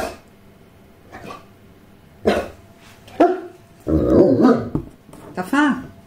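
A dog vocalizing: a few brief sounds about a second apart, then a loud rough grumble about four seconds in, followed by a couple of rising-and-falling whining calls near the end. It is the dog's 'talking', which the owner reads as asking for something, likely food.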